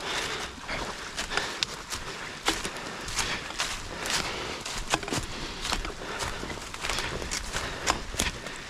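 Footsteps through dead leaf litter on a wet forest floor: irregular rustling and crackling steps.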